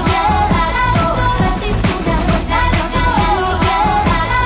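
Upbeat pop song with a singing voice over a steady beat.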